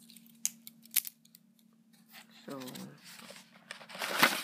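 A few sharp clicks and taps in the first second and a half as a small cardboard shipping box is handled, then rustling of the cardboard as it is picked up near the end.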